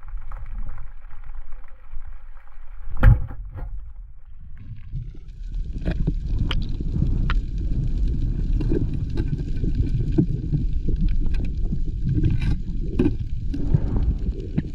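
Underwater, a wooden band-powered speargun fires with one sharp crack about three seconds in. It is followed from about five seconds on by a muffled, churning underwater noise with scattered knocks as the diver moves through the water toward the speared fish.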